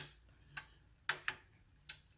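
Four short, sharp clicks from the Sonoff 4CH Pro's push buttons and relays switching as the channels are toggled, two of them close together in the middle.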